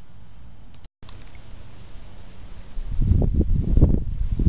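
Steady high-pitched insect song. A burst of low rumbling noise starts about three seconds in and is the loudest sound.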